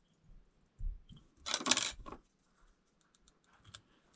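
Small metal fly-tying tools being handled and set down: a soft knock, then a brief metallic clatter about a second and a half in, followed by a few faint ticks.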